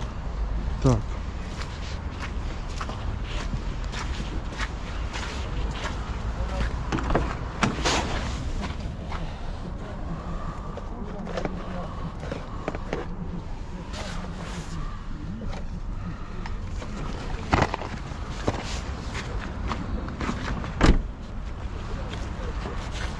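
Handling noise from boxes and objects being picked up and moved, with scattered knocks and clicks over a steady low rumble and faint background voices; a sharp thump near the end is the loudest sound.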